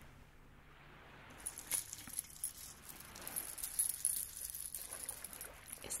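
A ball prop covered in small shiny beads clinks and jingles as it is lifted out of a metal bowl and turned in the hands. The light, high-pitched clicking starts about a second and a half in and goes on until near the end.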